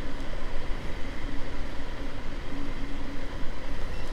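Wind buffeting the microphone and road noise from an Inmotion Climber dual-motor electric scooter cruising at its top speed of about 23 mph, with a faint steady whine from the motors.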